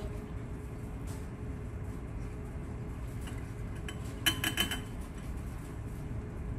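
Laboratory glassware clinking: a quick cluster of a few ringing glass taps about four seconds in, over a quiet, steady hum.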